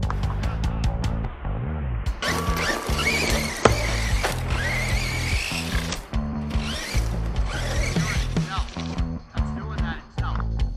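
Rock music with guitar and bass, over which a Redcat Shredder RC monster truck's electric motor whines and its tyres run on dirt. This happens in two bursts, about two seconds in and again around seven seconds, with the whine rising in pitch during the first.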